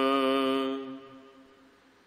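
A voice chanting a line of the Hukamnama, Gurbani scripture recited in a slow sung style, holding one long steady note that fades away about a second in; then a near-silent pause between lines.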